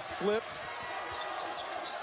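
Arena crowd noise from a televised college basketball game, with a basketball being dribbled on the hardwood court.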